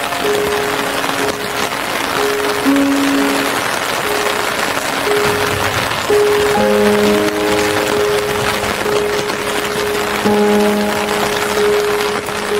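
Slow relaxing instrumental music of long held notes, a few sounding together, over the steady hiss of rain.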